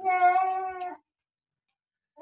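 Domestic cat giving one long, steady meow lasting about a second, while held down for a blood draw.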